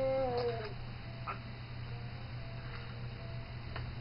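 The tail of an infant's long, drawn-out cry, falling in pitch and trailing off under a second in. After it, a low steady hum with a few faint clicks.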